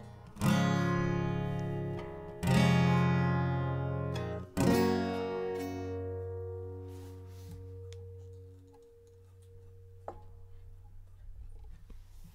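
Acoustic guitar strummed: three chords about two seconds apart, each left to ring. The last one fades slowly over several seconds.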